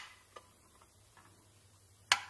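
Mostly near silence, broken by a few light clicks of thin pressed-steel toy truck parts being handled and fitted together. The clearest click comes about a third of a second in.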